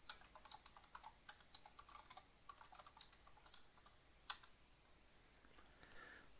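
Faint computer keyboard typing: a quick run of light keystrokes for the first three and a half seconds, then a single louder key press about four seconds in.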